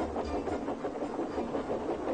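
Steam locomotives running along the track: a steady chuffing and the clatter of wheels on the rails.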